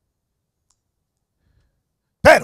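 Near silence: faint room tone with one short, faint click about two-thirds of a second in.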